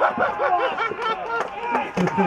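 Several men's voices calling out over one another: footballers shouting on the pitch.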